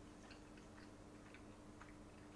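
Near silence: room tone with a faint steady hum and faint, soft ticks about twice a second.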